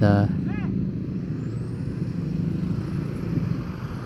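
A Hino dump truck's diesel engine running steadily as the truck passes close by.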